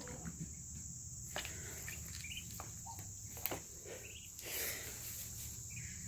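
Steady high-pitched trill of crickets, with a few faint splashes and drips as a Muscovy duckling paddles and dunks in a shallow plastic bowl of water.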